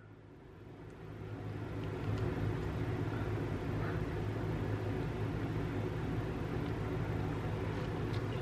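Steady low hum with an even hiss of background noise, fading in from silence over the first two seconds and then holding level.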